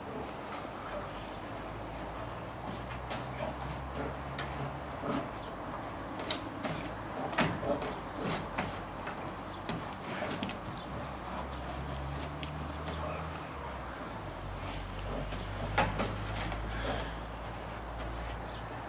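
Two brown bears play-wrestling on a wooden deck: scattered knocks, thuds and scrapes of paws and bodies on the boards, loudest about seven and a half and sixteen seconds in.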